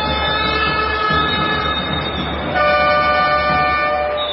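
A hand-held horn blown in the stands during a free throw: two long, steady blasts, the second starting about two and a half seconds in, over crowd noise.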